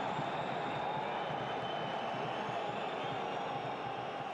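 Steady noise of a football stadium crowd, an even wash of sound with no single cheer or chant standing out.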